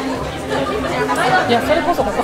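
Speech: people talking, with the chatter of other patrons in the background.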